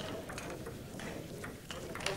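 Celluloid table tennis ball being struck back and forth in a fast rally: a run of sharp clicks, two or three a second, as it hits the rubber-faced bats and the table top.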